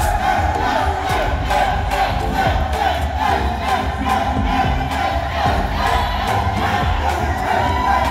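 A crowd cheering and shouting over music with a steady beat, loud and continuous.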